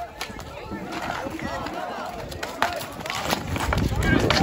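Players and onlookers shouting during an outdoor ball hockey game, with a few sharp clacks of sticks on the ball or pavement.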